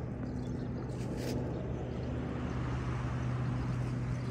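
A steady, unchanging low motor hum over an even background hiss.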